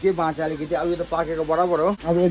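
A man talking without pause, his words not picked up by the speech recogniser.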